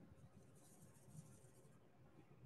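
Near silence: room tone with a faint, soft scratching hiss for about a second and a half.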